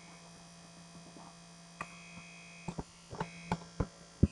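Computer keyboard and mouse clicks: a few short, sharp taps starting about two seconds in and coming closer together near the end, over a steady low electrical hum.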